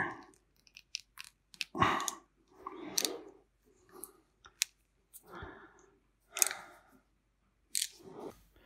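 Handling noise from a crimped wire terminal being pushed into a plastic weatherproof connector with pliers: scattered small clicks and a few crunchy scrapes and rustles.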